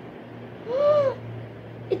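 A girl's short wordless "hmm", one pitch that rises then falls, lasting about half a second near the middle. A faint steady low hum runs underneath.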